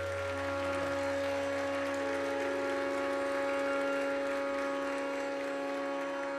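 Sustained drone of held pitches, typical of a tanpura, ringing on steadily after the singing and tabla have stopped, with one more tone joining about two seconds in.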